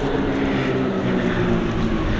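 A steady, engine-like drone holding several pitches, with a low rumble beneath it.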